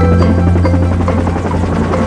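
Cartoon helicopter sound effect, a rapid rotor chop, over bright children's background music with mallet percussion and a long-held low note.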